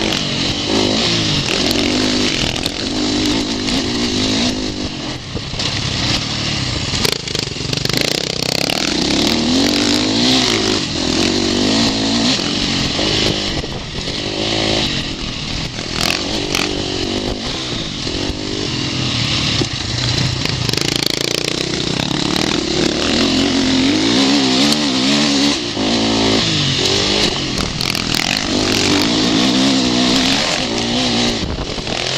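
2011 KTM 450SX four-stroke single-cylinder motocross engine being ridden hard, its revs rising and falling again and again with the throttle. A loud rush of noise runs over it throughout.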